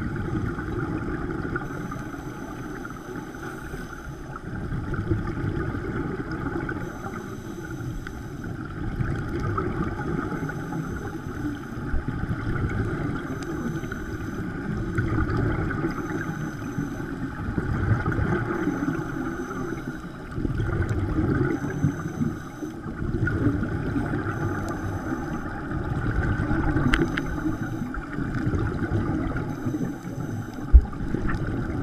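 Scuba divers breathing through their regulators underwater: exhaled bubbles burbling in swells every few seconds over a steady underwater rush.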